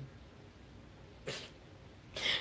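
Faint room tone, broken about a second in by one short, sharp breath through the nose: a stifled laugh.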